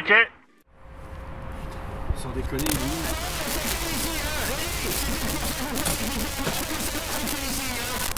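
Outdoor ambience: a steady hiss over a low rumble, with faint, indistinct voices. It starts after a brief dropout near the start and becomes fuller about two and a half seconds in.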